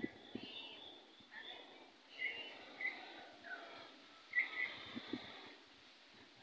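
Faint, scattered short bird chirps, about half a dozen over several seconds, some in quick pairs, with a few thin higher trills among them.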